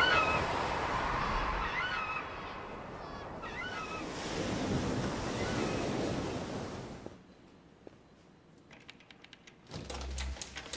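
Ocean surf and wind, with birds calling several times over the noise. About seven seconds in the sound fades away to near silence.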